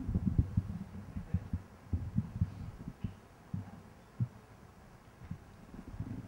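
Irregular low thuds and bumps from a podium microphone, about a dozen in all. They come thickly in the first two seconds or so, then further apart: handling and breath noise on the microphone just before a speech begins.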